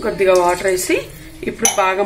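A woman speaking, with a single sharp clink of a metal utensil against a pot about one and a half seconds in.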